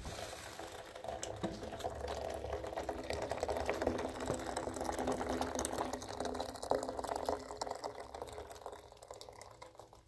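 Water poured in a stream from a metal kettle into a small metal teapot, filling it. The pour fades out near the end.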